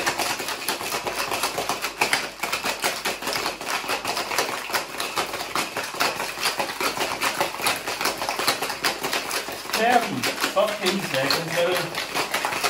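Ice rattling and knocking inside a stainless-steel cocktail shaker tin being shaken hard, a fast, even rattle of a large ice cube and cracked ice against the metal.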